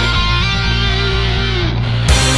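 Hard rock song in an instrumental break: distorted electric guitar holds sustained chords with a note bending near the end, and the drums are out.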